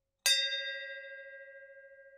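A single bell-like ding struck about a quarter second in, ringing on with several clear tones and slowly fading: a notification-bell sound effect for a subscribe animation.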